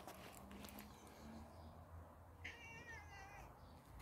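A domestic cat gives one faint, wavering meow about a second long, starting just past the middle.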